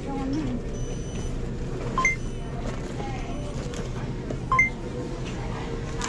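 Short electronic beep, a lower note stepping up to a higher one, repeating about every two and a half seconds over the low murmur of voices in a store.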